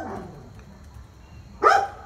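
A husky gives a single short bark about three-quarters of the way through.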